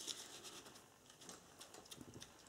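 Faint, scattered scrapes and crunches of a metal spoon stirring lye granules into packed snow in a plastic jug, mixing the lye solution for cold process soap.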